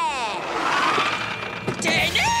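A cartoon car pulling up, with a rushing noise after a falling pitched slide at the start and a sharp click near the end as its door opens.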